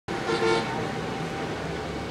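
A vehicle horn gives a short toot about half a second in, sounding several tones at once, over steady outdoor traffic noise.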